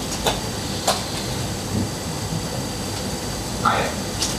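Two short laptop keystroke clicks within the first second over steady room hum, then a brief spoken word near the end.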